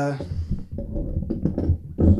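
Speech: a man's drawn-out "uh" trailing off at the start, then low, indistinct talk with a few small knocks in a small room.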